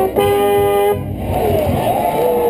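A marching band's brass, with a mellophone right at the microphone, holds the closing chord of the fight song and cuts off about a second in. Stadium crowd noise and voices follow.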